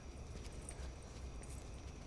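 Faint, steady low rumbling drone of horror-film background ambience, with scattered faint clicks above it.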